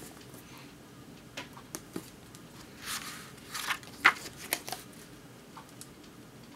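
Pages of a book being leafed through and handled: soft paper rustles and light taps, with a longer page swish about three seconds in.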